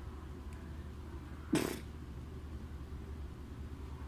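Squeeze glue bottle sputtering air once in a short burst about a second and a half in, over a steady low background hum.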